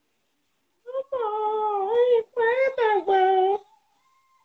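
A high-pitched voice holding three long, gliding wordless vocal sounds, starting about a second in.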